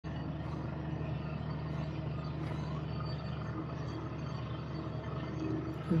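Steady low mechanical hum with a background hiss, holding an even level. A man's voice starts speaking at the very end.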